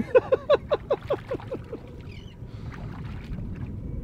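A man laughing: a run of about ten quick "ha" bursts that fall in pitch and fade away within the first two seconds, over steady wind and water noise.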